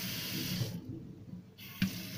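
Water running from a kitchen single-lever mixer tap into the sink. Its hiss falls away a little under a second in as the lever is moved, and there is a short click near the end.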